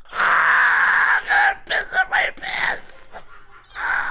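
Men laughing uncontrollably: a long, high, breathy laugh held for about a second, then a string of short bursts of laughter.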